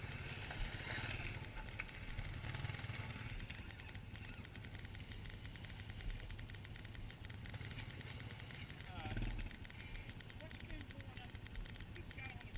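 ATV engines idling steadily, a low, even rumble.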